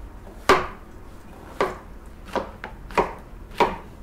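Chef's knife cutting a king oyster mushroom into cubes on a plastic cutting board: about five separate knocks of the blade on the board, a half second to a second apart, the first the loudest.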